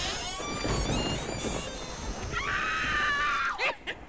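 Spooky sound effect for an edited title card: a steady noisy rush with thin wavering high tones early on, then a high-pitched wail like a scream held for about a second in the middle.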